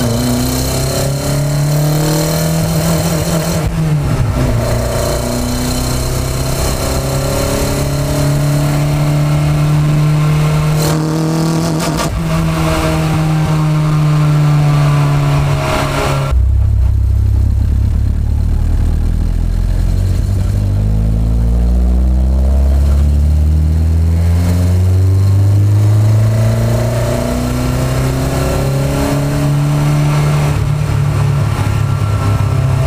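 The four-cylinder engine of a 1992 Honda Accord fitted with individual throttle bodies, heard from inside the car while driving. Its pitch climbs and dips with the throttle. About sixteen seconds in, the sound drops abruptly to a deeper, lower note that slowly rises again.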